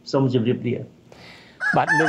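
A man speaks briefly, then about a second and a half in a rooster starts crowing, one long call that runs on past the end.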